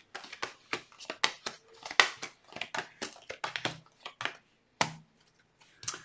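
Tarot cards being handled and laid out on a table: a run of short, irregular card snaps and slides, stopping about five seconds in.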